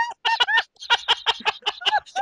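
Hearty, uncontrolled laughter: a fast run of short pitched bursts of 'ha-ha', with a couple of brief catches for breath early on.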